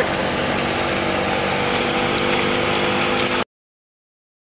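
A steady mechanical hum, like an engine running, under a noisy rush, with a few faint clicks; the sound cuts off suddenly about three and a half seconds in.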